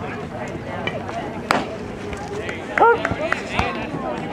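A baseball bat hits a pitched ball with one sharp crack about a second and a half in, putting the ball up in the air. Spectators shout a second or so later over steady background chatter.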